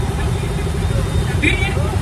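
Many motorcycle and scooter engines running together at low speed in a slow-moving rally, a steady dense rumble. A brief shouted word comes near the end.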